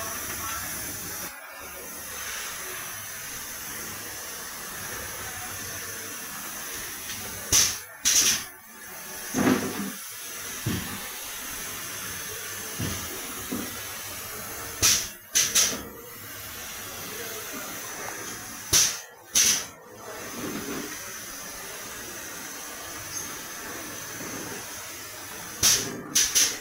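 Four-head servo screw capping machine running, with a steady hiss and a constant high whine. Every few seconds it gives a pair of short, sharp pneumatic air blasts about half a second apart as the capping heads cycle, and a few softer knocks fall between them.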